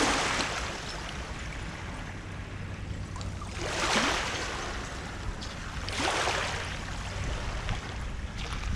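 Small waves washing up onto a shore of dark sand and shards, the wash swelling three times: at the start, about four seconds in and about six seconds in.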